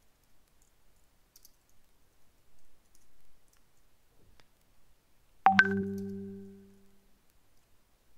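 Faint computer keyboard key clicks as commands are typed, then, about five and a half seconds in, a single loud ding that rings and fades away over about a second and a half.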